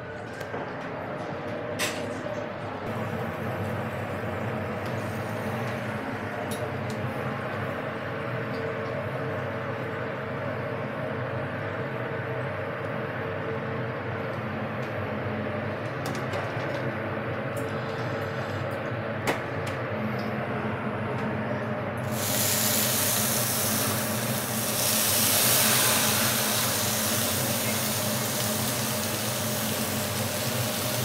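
Pak choi and tofu cooking in a hot pan over a steady hum of kitchen machinery, with a few light clicks of utensils. About two-thirds of the way in, a loud steam hiss rises suddenly and holds.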